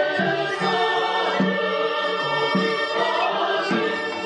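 A choir singing an Armenian folk song, with instrumental accompaniment beneath it. The sustained voices run on over a low line that moves note by note.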